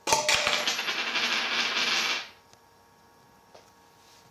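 Clear plastic cup knocked over on a wooden table: a few quick knocks, then about two seconds of steady clattering as it rolls, stopping abruptly.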